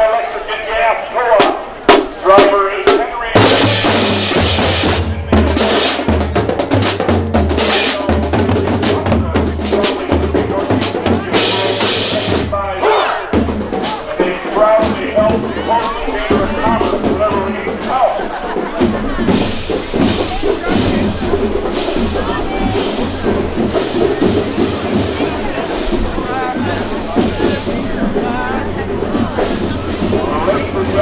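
Marching band passing in a parade: for the first three seconds the drum line plays separate hits, then the full band comes in, with low brass from the sousaphones, saxophones and bass drum and cymbals keeping a steady marching beat.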